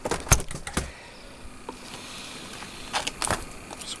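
Clicks and rattles of a multimeter and its test leads being handled, in a cluster near the start and another about three seconds in. Under them is the steady hum of the UPS cooling fan, which runs while the unit is on battery power.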